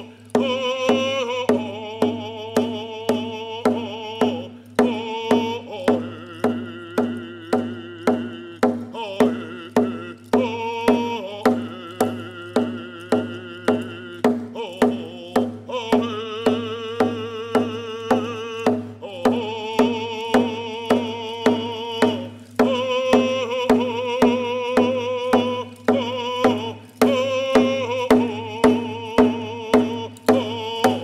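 A man singing a traditional First Nations song, accompanying himself with steady strokes on a single-headed hide hand drum, about one and a half beats a second. His voice holds long notes and breaks off briefly every few seconds between phrases while the drumbeat carries on.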